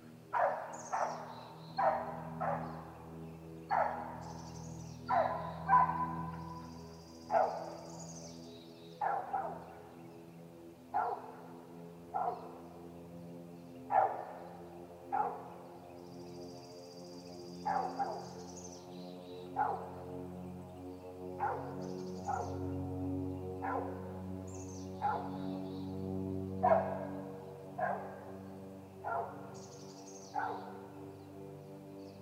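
An animal calling over and over with short, sharp, bark-like calls, about one every second, while small birds chirp faintly now and then.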